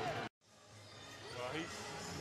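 Televised basketball game sound: loud arena crowd noise that cuts out abruptly about a third of a second in. It fades back in as quieter arena ambience, with a commentator's voice coming in near the end.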